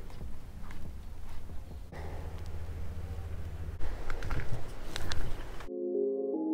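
Wind on the microphone, heard as a low rumble, with a few light clicks about four to five seconds in. Just before the end it cuts off and soft synthesizer music begins.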